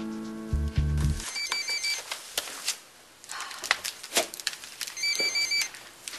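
A short dramatic music sting ends about a second in. Then a telephone rings twice, a few seconds apart, each ring a quick warbling trill, with scattered small knocks between the rings.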